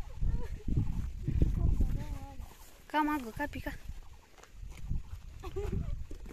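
Gusty wind rumbling on a phone microphone, with a short voice-like call about three seconds in.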